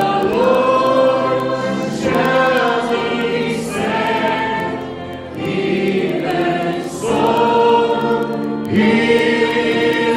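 Group of voices singing a slow worship song together, holding long notes that change every second or two.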